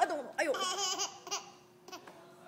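A baby laughing: a run of high-pitched laughs in the first second and a half, then dying away.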